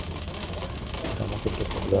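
Steady low rumble of a shopping cart being pushed across a hard store floor, with a constant low hum under it. Faint voices are heard about a second in.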